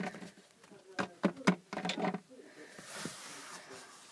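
Plastic toy figures handled on a wooden shelf: a few soft taps and knocks, then a soft rustling hiss about two and a half seconds in.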